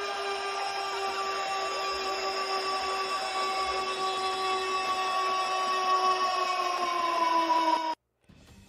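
Edited-in goal sound effect: one long horn-like tone held over a steady hiss, sagging in pitch near the end before it cuts off suddenly.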